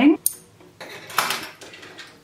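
Small metal scissors cutting the knitting yarn: a light metallic snip and rustle about a second in, amid faint handling clicks.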